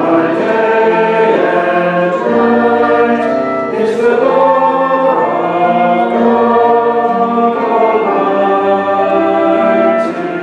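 A congregation singing a worship song together, with held notes that change every second or so.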